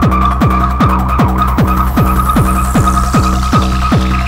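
Acidcore electronic music: a rapid, distorted kick drum pounds in an even four-on-the-floor pattern under a steady, buzzing high synth line. From about halfway through, a hissing noise sweep falls in pitch.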